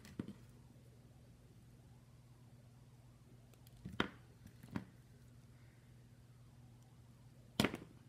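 Small tools and wires being handled at a workbench: a few short, sharp clicks and taps, one at the start, two near the middle and one near the end, over a steady low hum.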